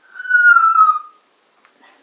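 A pet parrot's loud whistle: one clear note about a second long, falling slightly in pitch.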